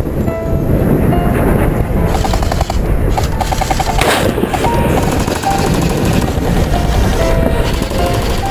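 Continuous rapid automatic gunfire from AK-style BB rifles, with music playing underneath.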